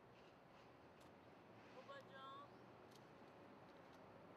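Near silence, with a brief, faint voice about halfway through.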